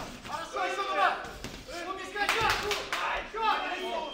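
Men shouting from ringside during a boxing sparring exchange, with a few sharp smacks of gloved punches among the voices, one of them about a second in.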